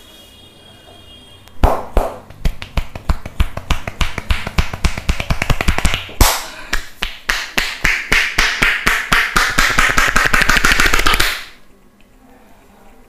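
A barber's hands striking a man's head in a percussive head massage: a run of sharp slaps, a few a second at first, then faster and denser after a brief break, stopping suddenly near the end.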